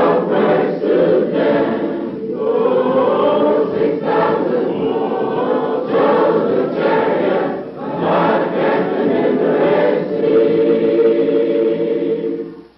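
A choir singing, many voices together, ending on a long held chord near the end.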